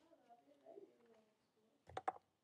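Near silence, with a faint wavering sound in the background in the first second. A short click near the end comes from the sketchbook being handled as its page turns.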